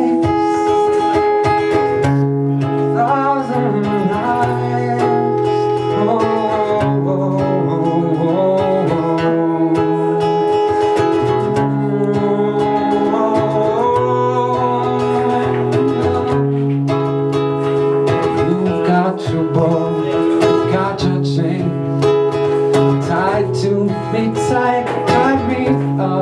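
Acoustic guitar strumming an instrumental passage of a live folk-soul song, with steady chords over changing bass notes.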